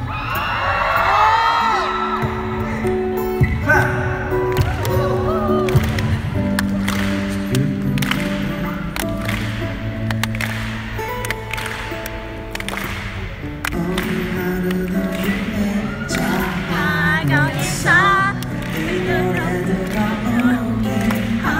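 Live acoustic band music: an acoustic guitar plays held chords with a cajon beat, and a crowd cheers at the start. Wavering sung notes come in during the last few seconds.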